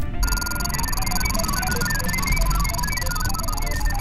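Sci-fi computer sound effect: a quick stream of short electronic bleeps hopping randomly in pitch over a steady high whine, with a low rumble underneath, starting about a quarter second in.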